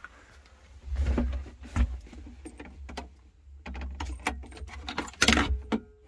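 Scattered clicks, knocks and rustling as someone moves about the cab of a Case CX37C mini excavator, with a short jingle of keys about five seconds in.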